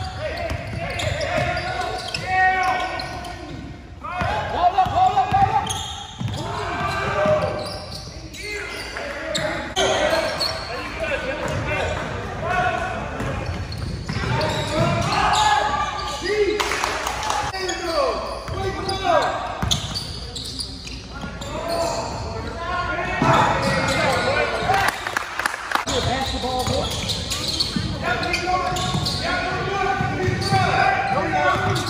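Basketball being dribbled and bounced on a hardwood gym floor during a game, with indistinct shouting from players and spectators echoing in the large hall.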